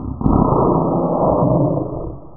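A person retching and spewing foam after drinking baking soda and vinegar: a loud, harsh, rasping burst starting a fraction of a second in and lasting about a second and a half, then fading.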